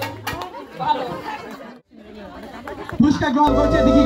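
Several people chattering at once, with a brief break about two seconds in. Background music with long held notes comes in near the end.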